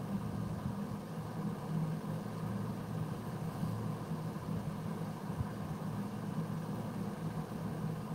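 Steady low background hum that holds even throughout.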